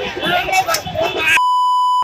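Excited, overlapping voices cut off abruptly about two-thirds of the way in by a loud, steady high-pitched censor bleep that masks a word.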